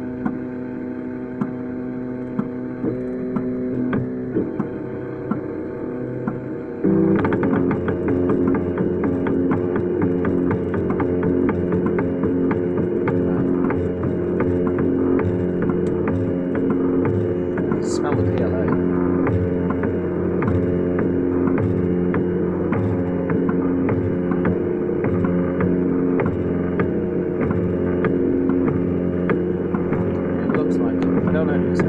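Velleman Vertex K8400 3D printer running while laying the first layer in PLA: its motors whine in several tones that shift as the print head changes moves, over a steady hum. About seven seconds in the sound suddenly gets louder, with a rapid fine ticking.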